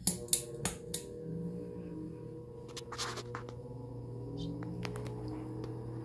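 Diehl G12AJ16 desk fan switched on at low speed: a sharp click, a few more clicks, then its motor's startup sound, a steady hum with several ringing tones that builds slightly as the blades come up to speed.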